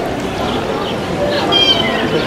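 Metal wind chimes ringing: clear, steady high tones start about one and a half seconds in, over a background of crowd chatter and short falling high-pitched calls.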